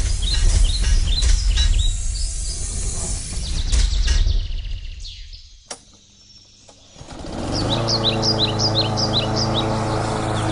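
Birds chirping in quick repeated calls over a low rumble, fading out about five seconds in; after a sharp click, an engine starts and settles into a steady run, with birds chirping above it again.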